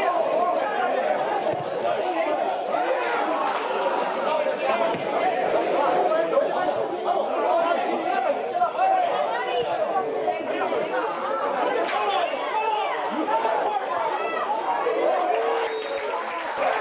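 Spectators in the stands chattering, many voices talking over one another at once with no single voice standing out.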